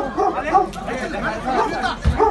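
Several voices talking over one another, an indistinct jumble of speech.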